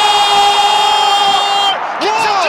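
A male football commentator's long, high-pitched held shout at a goal, breaking off near the end, over stadium crowd cheering.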